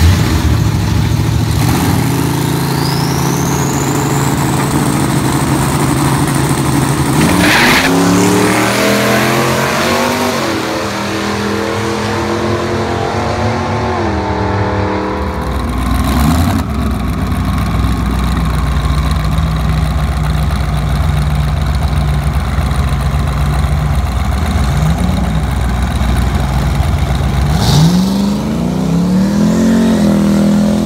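Twin-turbo V8 Pontiac GTO held on the line, with a high whine rising as the turbos spool. About seven seconds in it launches and accelerates hard, the engine note climbing with short breaks at the gear shifts. After a cut the engine runs steadily, with short revs near the end.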